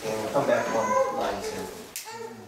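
A person's voice talking, with rising and falling pitch, loudest in the first second.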